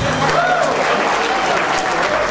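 Audience applauding and cheering as the band's last chord cuts off, with one rising-and-falling shout of cheer about half a second in.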